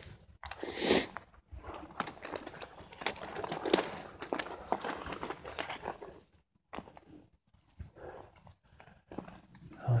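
Footsteps crunching over loose rocky gravel, with desert brush brushing against clothing and handling noise. There is a loud rustle about a second in, busy crunching for the next few seconds, then only sparse, quieter steps in the second half.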